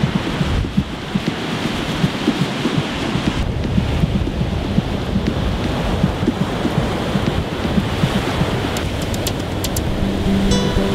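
Sea surf washing onto a sandy beach, with wind buffeting the microphone in uneven low gusts.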